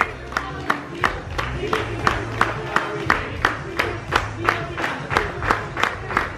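A group of people clapping in unison, about three claps a second, along with voices singing or chanting in time.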